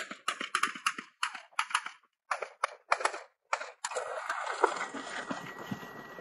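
Rifle shots from a live-fire drill: about a dozen sharp single shots, two or three a second, fired at an uneven pace. After about four seconds the shooting stops and a steady rushing noise follows.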